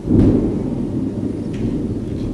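A loud low rumble that jumps in just after the start, peaks briefly, then holds steady.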